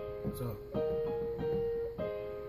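Yamaha Portable Grand digital keyboard playing a held A-flat major chord (A flat, C, E flat) in a piano voice, with another note added about three-quarters of a second in and held.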